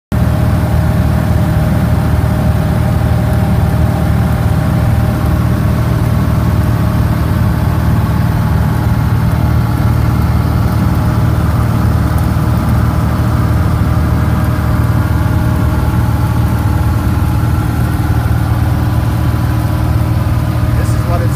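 Engine and propeller of a small single-engine airplane in cruise, heard inside the cabin: a loud, steady drone whose pitch holds constant.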